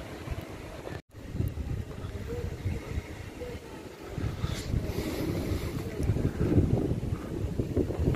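Strong wind buffeting a phone's microphone: a low, uneven rumble that surges in gusts, cutting out for an instant about a second in and growing louder toward the end.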